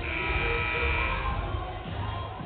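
Arena horn buzzer sounding for about a second during a dead ball, over background music.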